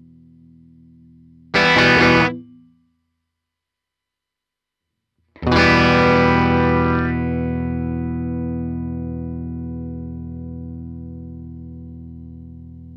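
Electric guitar through a Fender Mustang GTX100 modeling amp set to its Super Reverb amp model with no effects. A fading chord is followed by a short strummed chord, cut off about two seconds in. After a silence, a chord is struck about five seconds in and left to ring, fading slowly.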